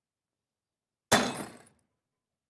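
A glass bottle thrown into a bin and shattering: one sudden crash of breaking glass about a second in, fading out within about half a second.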